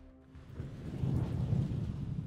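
A low rumble swells in about half a second in, peaks midway and slowly fades, with a few faint held tones above it.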